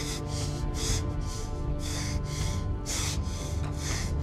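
A man's heavy, ragged breathing, quick breaths about two a second, over a score of sustained low music notes.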